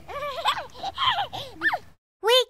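Young children's voices making short exclamations that rise and fall in pitch, the last a high rising squeal near the end, then the sound cuts off abruptly.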